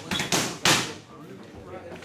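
Boxing gloves striking focus mitts during pad work: three quick, sharp smacks within the first second.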